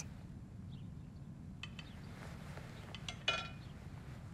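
Quiet kitchen room tone with a few faint clicks about halfway through and a short clink of crockery about three seconds in.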